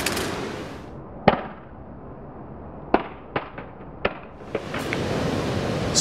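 Scattered sharp clicks and light knocks on concrete just after a Samsung Galaxy Note smartphone has been dropped: the phone and its loose parts being handled. One clear click comes about a second in and a quicker run of small ticks comes in the middle, over a background hiss that fades early and returns near the end.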